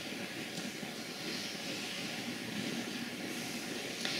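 Steady background hiss of room tone, even and unchanging, with no distinct event.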